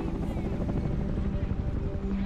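Helicopter rotors beating in a rapid, steady chop as a Black Hawk sets down, with a low held tone coming back in near the end.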